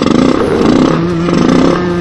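Motorcycle engine sound effect running with a rapid firing rattle and shifting pitch. It cuts in suddenly.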